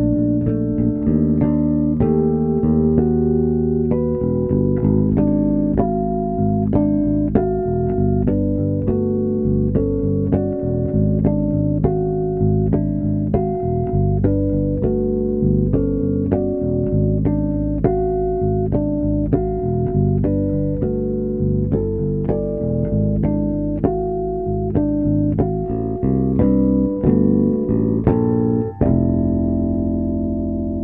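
Solo fretless electric bass playing chiming harmonics, several notes ringing together as chords, with a new plucked note every second or so. Near the end the sound dips briefly and a fresh chord of harmonics rings on.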